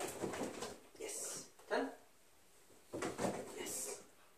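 A fabric agility tunnel rustling in bursts as a puppy runs through and around it, about every second and a half, with a short spoken cue from the handler in between.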